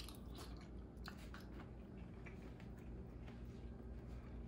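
Faint chewing of a mouthful of cooked shrimp: soft, irregular mouth clicks over a low steady hum.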